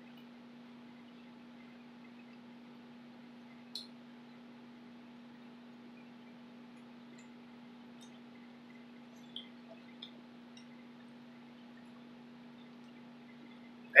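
Quiet room tone with a steady low electrical hum and a few faint clicks, one about four seconds in and two close together near ten seconds.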